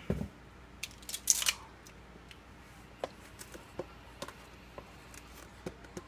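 Light clicks and rattles of a ring of plastic measuring spoons and a plastic spice jar being handled: a cluster of clicks about a second in, then scattered single clicks.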